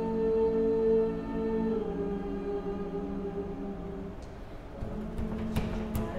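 Female choir holding a sustained chord that fades away over about four seconds. A low held note comes back in, with a few sharp clicks near the end.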